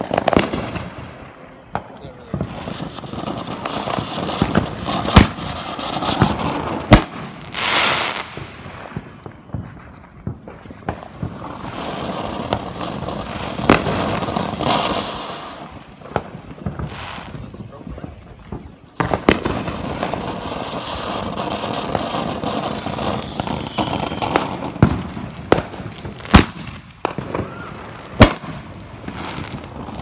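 Ground-level consumer fireworks going off: fountains hissing and crackling in swells, with several sharp bangs scattered through, the loudest near the middle and in the last few seconds.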